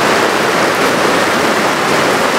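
A steady, even rushing noise, with no voices or distinct knocks in it.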